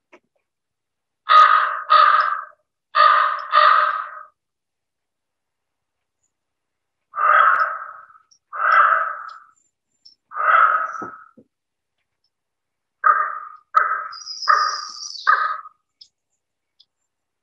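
Common raven calling in hoarse croaks: two pairs of calls, then three more spaced out, then four shorter ones in quick succession near the end. A thin, high, slightly falling whistle sounds over the last calls.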